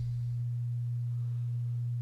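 A steady low electrical hum: one constant low tone with nothing else over it.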